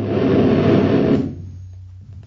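Live laptop electronic music: a loud, dense burst of noisy sound that drops away about a second and a half in, over a steady low hum.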